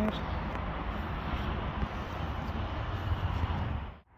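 Wind blowing across the microphone: a steady low rush with gusty rumble, which fades out near the end.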